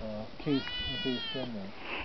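A single drawn-out, high-pitched animal call lasting over a second, rising slightly and then falling away, over faint background talking.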